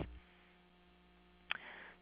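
A pause in a voice recording: a faint, steady low mains hum. About one and a half seconds in there is a short mouth click, then a breath drawn in.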